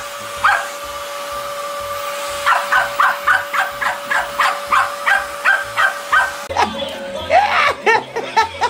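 A small dog yapping at a running stick vacuum cleaner: two barks at the start, then a quick run of short, high yaps about three or four a second, over the vacuum motor's steady whine. Near the end the whine stops and other dog yelps follow.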